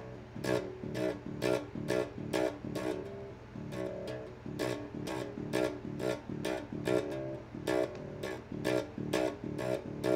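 Cheap electric bass guitar with softer, less twangy aftermarket strings, played through its small bundled practice amp: single notes plucked at a steady pace of about two a second, with a brief pause about a third of the way in.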